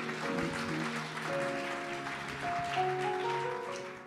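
Keyboard playing held chords whose notes step gradually higher, fading out at the end.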